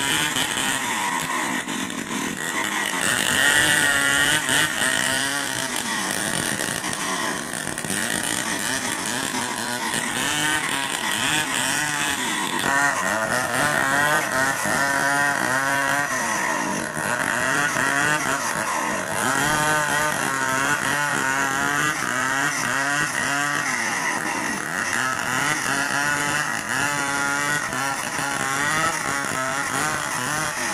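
Stihl 070 two-stroke chainsaw ripping lengthwise through a large log. The engine runs at high speed throughout, its pitch repeatedly sagging and recovering as the chain bogs under load in the cut.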